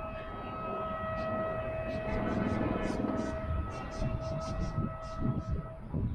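A long, steady horn note held for nearly six seconds, not rising or falling, that cuts off shortly before the end, over a low rumble. Short high chirps are scattered through the middle of it.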